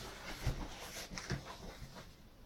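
Cardboard box flaps and crumpled paper packing being handled, faint rustles and a couple of soft knocks.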